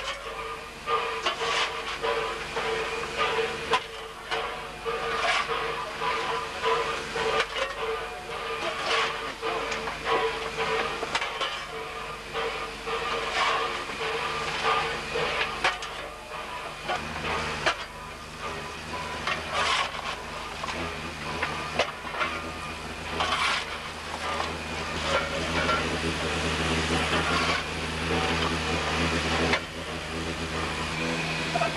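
Inside a steam locomotive's cab: steady steam hiss and running noise, with irregular sharp scrapes and clanks as coal is shovelled into the firebox. A deeper rumble joins about halfway through.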